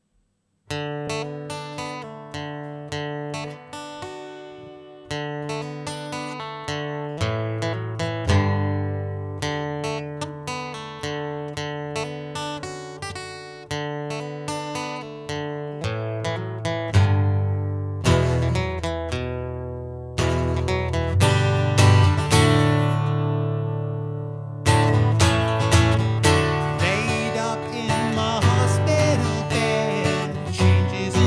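Steel-string acoustic guitar fingerpicked solo: a steady pattern of plucked treble notes over ringing bass strings, starting about a second in and getting louder and fuller about two-thirds of the way through. A man's singing voice comes in over the guitar near the end.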